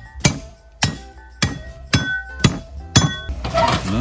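A machete hammering the spine of a knife down through a goat's skull on a wooden chopping block: six sharp metallic strikes about half a second apart, each ringing briefly. Near the end a rougher, noisier sound follows as the skull splits open.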